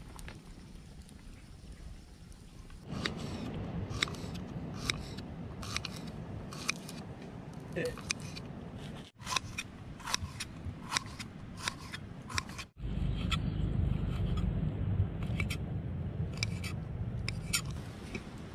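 Kitchen knife cutting onion on a wooden cutting board. Irregular sharp knocks of the blade against the board come about one to two a second, starting about three seconds in.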